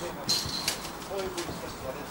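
Faint, distant voices over low rumbling wind noise on the microphone, with a short high-pitched chirp about a third of a second in.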